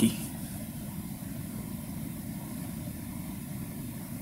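Steady low background rumble with faint hiss and no distinct events, after the tail of a spoken word at the very start.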